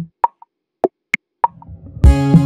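Sparse electronic percussion in a background music track: short plop-like blips and clicks at uneven spacing, some with a brief pitched ring. A faint low sound comes in near the end.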